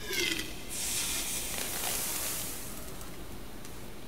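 Liquid oxygen boiling off with a hiss where it has been poured over the cold magnets. The hiss swells about a second in and fades away over the next two seconds.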